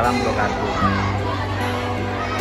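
Many children's voices chattering and calling out in a crowd, over background music with steady held low notes.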